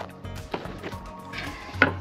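Handling knocks as a metal mixing bowl of sauced chicken wings is picked up off a wooden slatted table: a sharp knock at the start, a few light clicks, and a louder knock near the end.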